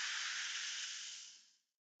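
Cartoon sound effect of a model volcano erupting: a steady fizzing hiss that fades out about a second and a half in.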